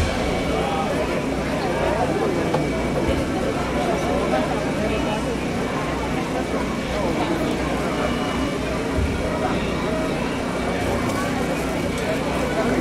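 Crowd chatter: many overlapping voices of a large gathering at a steady level, with no single voice standing out.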